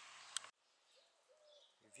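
Near silence: faint outdoor hiss that cuts out half a second in, followed by a faint bird call.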